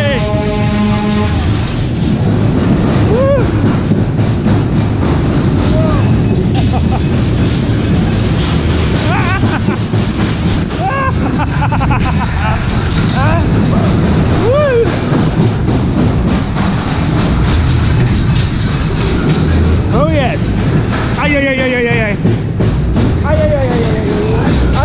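Superbob fairground ride running at speed: a steady heavy rumble of the bob cars on the track, with loud ride music playing. Short whooping shouts rise and fall every few seconds, a cluster of them a little after twenty seconds in.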